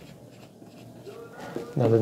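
Marker pen writing on a whiteboard: faint strokes of the felt tip across the board. A man starts speaking near the end.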